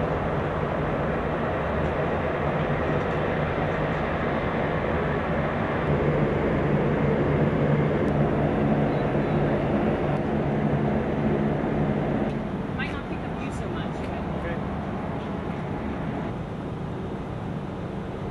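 A steady mechanical rumble with a low hum, like a running engine, easing somewhat about two thirds of the way through, with a few faint clicks.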